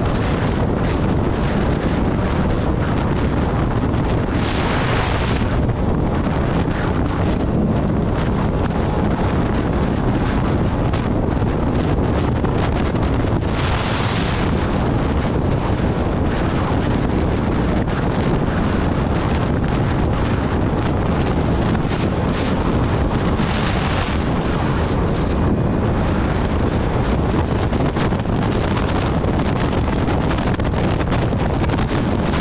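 Loud, steady wind rushing over the microphone of a 125cc scooter held at about 85–90 km/h on a top-speed run. It swells briefly a few times.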